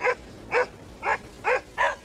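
A dog barking five short barks, evenly spaced about two a second.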